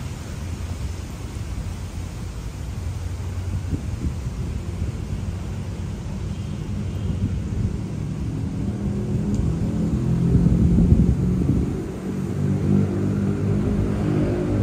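A steady low rumble of city traffic that grows louder in the second half, with background music fading in near the end.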